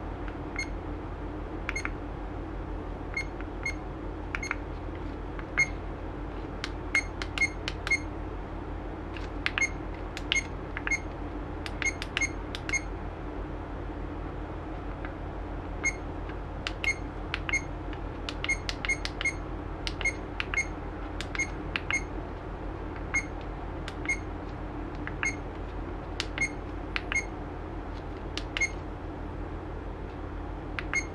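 Action camera menu beeps: short, high electronic beeps as buttons are pressed to scroll through the video settings. They come irregularly, often in quick runs of two to four, with a pause of a few seconds partway through.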